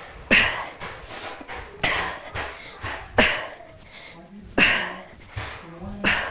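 A woman's sharp, breathy exhalations, one with each kettlebell swing, about one every second and a half: hard breathing from the effort of Russian kettlebell swings.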